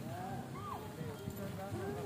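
Faint voices of people talking in the background, with a low, irregular knocking texture underneath.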